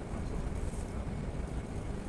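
Steady low rumble with faint hiss: background room noise with no speech.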